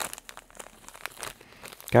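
Clear plastic retail bag of synthetic Angel Hair tinsel crinkling as it is handled, a run of small irregular crackles.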